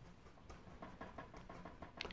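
Near silence with faint, irregular soft scratches and ticks from a paintbrush blending thick acrylic paint on the painting surface.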